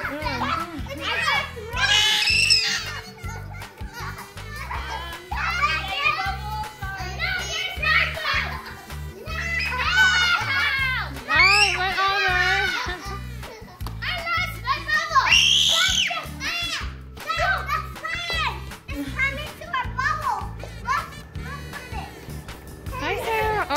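A group of young children's high-pitched cries, shouts and chatter as they play excitedly, over background music.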